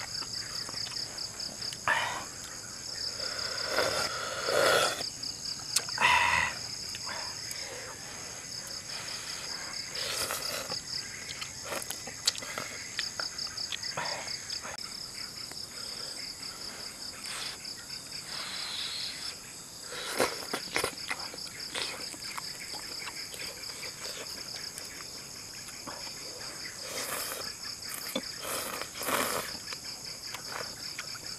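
Insects chirring steadily in a fast, high-pitched pulsing trill, with a second higher, even note that fades about halfway through. Over it come irregular louder slurps and chewing noises of noodles being eaten.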